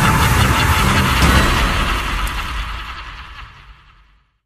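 Film-teaser soundtrack: a loud, dense mix of score and sound effects with a heavy low rumble, fading out to silence over the last two seconds.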